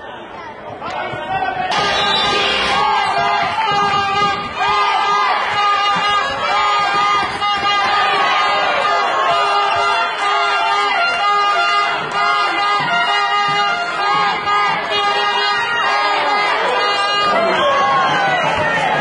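Music playing in a large sports hall, mixed with the voices and chatter of a crowd. The sound changes abruptly about two seconds in.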